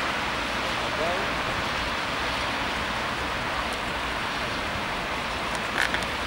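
Steady outdoor hiss, with a faint distant voice calling out about a second in.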